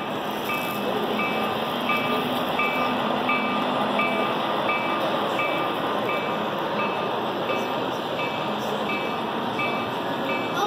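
Model train running on the layout: steady running noise of two diesel switcher locomotives and their freight cars on the track, over crowd hubbub, with a short electronic-sounding tone repeating about three times every two seconds.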